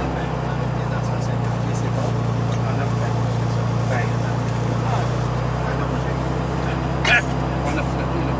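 Light aircraft's piston engine and propeller running at a steady drone, heard from inside the cabin, with a brief sharp sound about seven seconds in.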